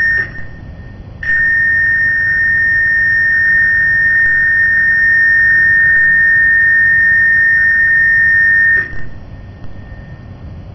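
Cruise ship Ventura's general emergency alarm sounding a steady high-pitched electronic tone for the muster drill: a short blast cuts off just after the start, and after a gap of about a second a single long blast follows for about seven and a half seconds. It is the closing long blast of the general emergency signal that calls passengers to their muster stations, sounded here as an exercise.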